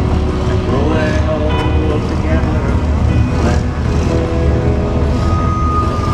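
Motorcycle running at low speed with a steady low rumble, heard through a bike-mounted camera's microphone along with wind on the mic, while voices and music sound in the background.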